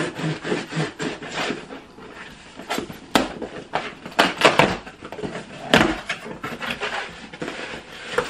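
Cardboard shipping box being torn open by hand: packing tape ripped and cardboard flaps pulled and scraped, with irregular rough tearing and several sharp cracks, the loudest a little past the middle.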